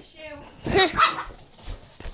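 A dog barking twice, about a quarter second apart, near a second in.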